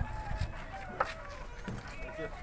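Unfired bricks being stacked by hand: one sharp clack of brick on brick about a second in, over faint short calls in the background.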